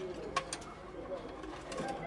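A bird calling in the background with low wavering notes, and two sharp clicks close together about half a second in.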